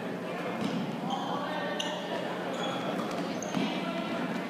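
Basketball game sounds in a gym: the ball bouncing on the hardwood floor, short high sneaker squeaks several times, and a steady murmur of spectator chatter echoing in the hall.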